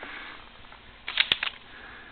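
Crumpled brown kraft paper crinkling in a short burst about a second in, with a sharp click in the middle of it. A fainter rustle comes at the start.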